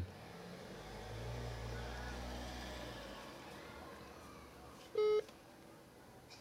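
A phone placing a call: a single short electronic beep about five seconds in, after a low rumble that swells and fades over the first few seconds.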